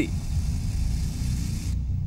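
Deep, low rumbling drone from the news report's background sound bed, pulsing about twice a second, with a faint hiss above it that cuts off suddenly near the end.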